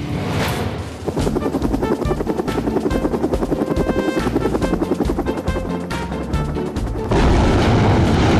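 Cartoon helicopter sound effect: rapid, even rotor chopping over background music, then a sudden jump to a louder, steady rush of helicopter noise about seven seconds in.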